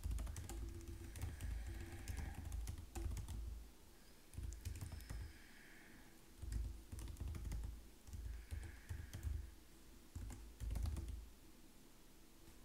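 Typing on a computer keyboard: irregular runs of key clicks with dull thuds, pausing briefly now and then.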